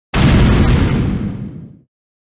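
A single explosion-like boom sound effect that starts abruptly and dies away over about a second and a half, the high end fading first.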